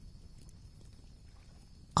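A quiet pause: faint steady background hiss with a thin, high, steady whine, and no distinct sound events.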